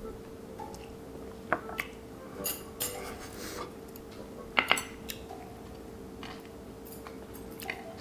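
Tableware sounds at a meal: a few sharp clinks and taps of a small drinking glass and chopsticks against dishes and a frying pan, the loudest pair a little past halfway. A faint steady hum runs underneath.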